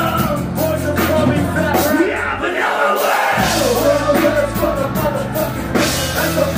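Live punk rock band playing with drums, bass, keyboard and shouted vocals into microphones. About halfway through, the bass and drums drop out for roughly a second under the vocals, then the full band crashes back in.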